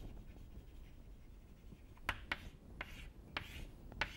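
Chalk writing on a chalkboard: faint scratching as a word is written, then several quick, sharper chalk strokes in the second half as lines are drawn under the words.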